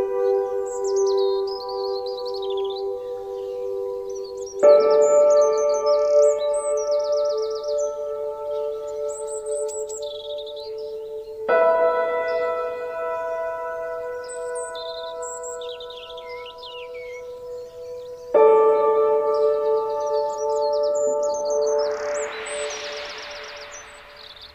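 Meditation music of long ringing tones, a new chord struck about every seven seconds and fading slowly, with birds chirping over it. A hissing whoosh swells up near the end.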